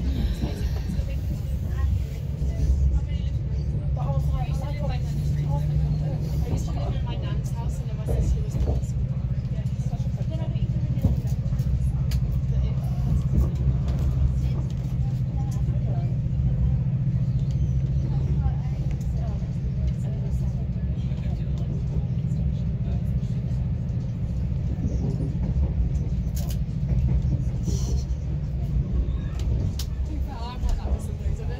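Interior of a moving train hauled by a Class 68 diesel locomotive: a continuous low running rumble with a steady engine drone, and faint passenger voices in the background.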